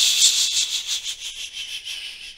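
A person's long, drawn-out "shhhh" shush, a steady hiss that slowly fades.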